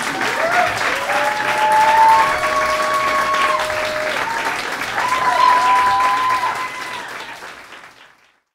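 Audience applauding, with voices calling out over the clapping; the applause fades out near the end.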